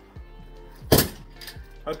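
A single sharp metallic clack about a second in from a telescoping steel expandable baton, its sections snapping together with a brief ring.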